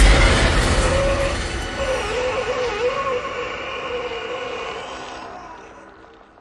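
A sudden loud hit out of silence, with a low rumble and a noisy, wavering drone over it, fading away over about six seconds: a film sound-effect sting.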